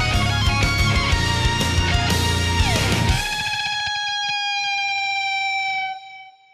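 Heavy metal band with an electric guitar lead over drums and bass. About three seconds in, the band drops out and one long electric guitar note, bent down in pitch, rings on alone, fading away near the end.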